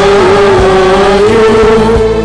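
Choir singing Syriac Orthodox liturgical chant, loud, with one long held note that wavers slightly, over a steady lower accompaniment.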